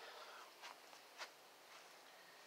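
Near silence: faint background hiss with two soft, faint ticks, about two-thirds of a second and a second and a quarter in.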